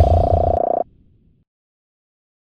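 Electronic outro sound effect: a loud, buzzy synthesized tone over a deep bass hit, cutting off abruptly under a second in and trailing away briefly.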